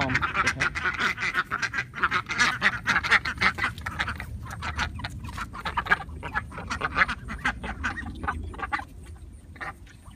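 Ducks quacking in a rapid run of short, overlapping calls that thin out near the end.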